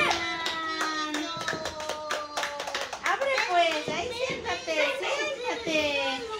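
Hand clapping in quick strokes, mixed with excited, high-pitched voices calling out and holding long drawn-out notes.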